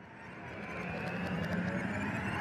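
Steady background noise fading in and rising in level, a mix of murmur and scattered clicks without clear words.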